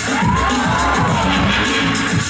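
Loud breakdance music played over the hall's sound system, a heavy beat repeating steadily, with a tone that sweeps up and back down over about a second near the start.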